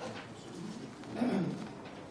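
Quiet meeting-room sound with a brief low, voice-like murmur about a second in.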